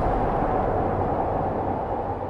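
Low, noisy rumble of a cinematic boom sound effect, slowly dying away, with a faint steady tone above it.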